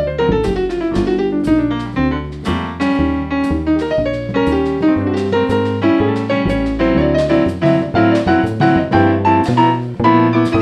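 Jazz piano solo played on a stage keyboard with a piano sound, opening with a falling run, over upright bass notes underneath; no singing.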